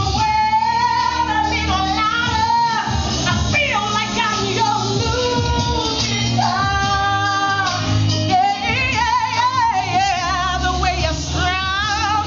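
A woman singing live over musical accompaniment with a steady bass line. She holds long notes, some with a wavering vibrato.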